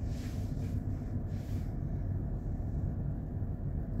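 Steady low background rumble, with faint rustling over the first second or so.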